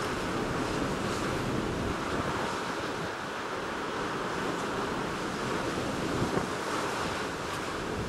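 Steady rush of rough sea surf, mixed with wind noise on the microphone.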